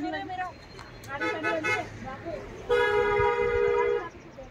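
A horn sounds one steady, unwavering blast lasting over a second, starting a little past halfway, after a few brief spoken words.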